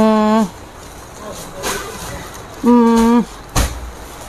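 A woman's voice making two short held vowel sounds, each about half a second at a steady pitch, one at the start and one about three seconds in. A brief thump follows near the end.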